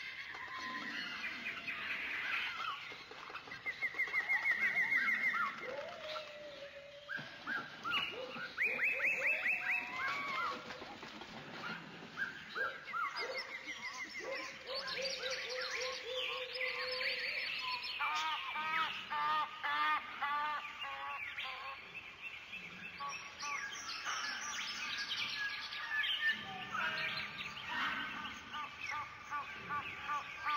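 Birds chirping and singing, many short calls and trills overlapping.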